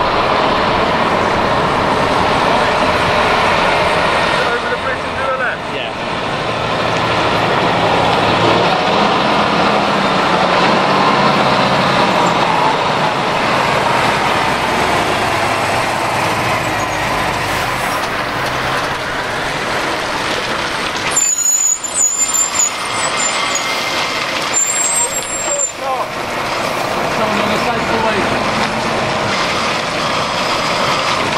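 Heavy-haulage MAN lorry pulling a low-loader with a locomotive aboard, its diesel engine running as it drives slowly up and past.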